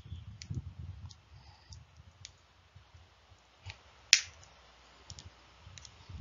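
A single sharp finger snap about four seconds in, the cue to say the sentence aloud after reading it silently. A few fainter clicks and low room noise come before it.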